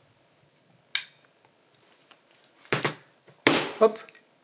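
Metal pedal axle being pushed through a nylon pedal and its metal support bracket by hand: one sharp click about a second in, light ticking and rubbing after it, then louder handling knocks near the end.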